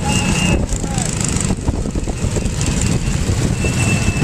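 Wind buffeting the microphone over the running of small go-kart engines, with a thin steady high whine near the start and again near the end.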